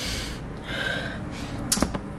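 A person's sharp intake of breath, then a short, sharp knock near the end.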